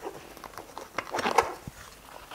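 Hands moving metal tools among the fabric pouches of a tool roll: fabric rustling with several light clicks and knocks, busiest about a second in.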